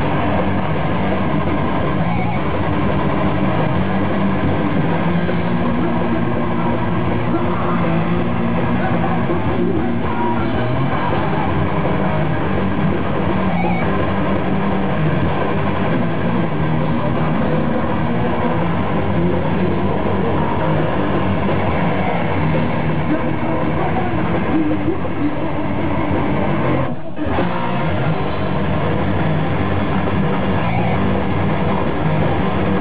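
Heavy metal band playing live: electric guitar, bass and drums in a dense, steady wall of sound, with a brief dip in level near the end.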